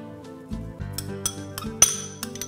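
Metal spoon clinking against a small glass prep bowl while scraping out chopped green onion: several sharp, ringing clinks in the second half, the loudest just before the end. Background music plays steadily underneath.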